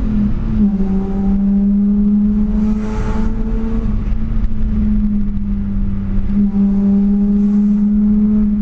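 BMW 328i E36's straight-six engine, with a stainless exhaust and 6-into-2 header, heard from inside the cabin under way. The pitch drops in the first half-second as a gear is changed, then the engine holds a steady drone that climbs slowly in pitch as the car pulls.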